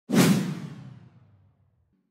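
Whoosh sound effect of a TV news title-card transition, with a low hit underneath: it starts suddenly and fades away over about a second and a half.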